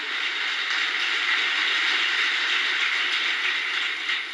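A large audience applauding, a steady dense clapping with no pause.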